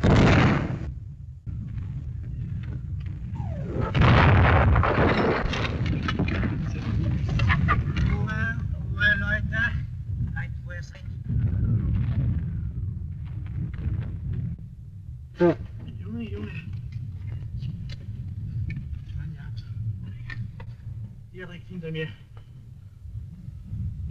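Artillery shells exploding around a trench, a blast at the start and the loudest one about four seconds in, over a continuous low rumble of bombardment. Scattered sharper bangs and men's voices follow.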